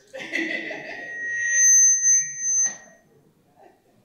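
Public-address microphone feedback: a loud, steady high-pitched squeal at two pitches that swells over a second or so, then cuts off suddenly a little before the third second.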